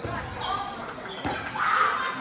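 Basketball bouncing on a hardwood gym floor, echoing in a large hall, with voices from players and spectators; a loud shout comes near the end.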